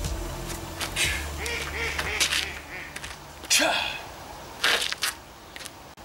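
Ducks quacking: a run of short calls, then two louder calls about a second apart near the middle.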